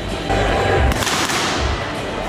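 Boxing gloves striking focus mitts: a few sharp slaps with low thuds as punches land on the pads.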